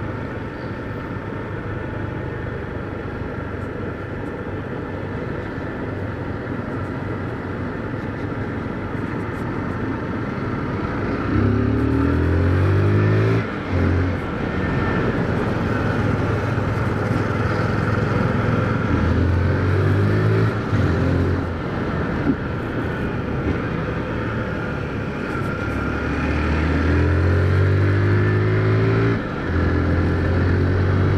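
Honda CG Titan's single-cylinder engine under way with a steady rush of road and wind noise. From about a third of the way in, it accelerates three times, its pitch climbing and then dropping briefly at each gear change.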